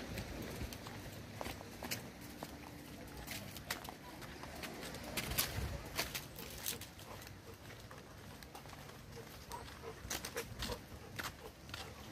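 Footsteps and handling clicks of someone walking outdoors with a handheld camera: scattered sharp clicks, a cluster near the middle and another near the end, over a low steady rumble.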